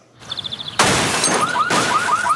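A crash-and-shatter sound effect: a quick run of light ticks, then a sudden loud burst of noise about a second in. A second burst follows near the end, with a fast run of repeating chirps over it.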